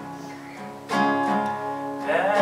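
Acoustic guitar played alone: a chord fades, then a new chord is strummed about a second in and left ringing.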